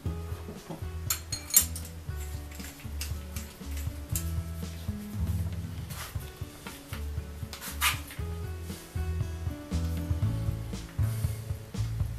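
Background music with a steady bass line, over a few sharp metallic clinks of steel tools handled on a wooden workbench as an auger bit is fitted into a hand brace.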